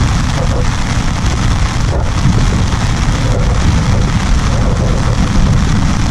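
Steady rain drumming on an umbrella held just overhead, a loud, even patter.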